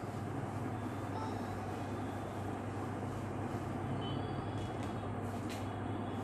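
Steady low hum with an even background hiss, a continuous machine-like room noise, with a few faint ticks near the end.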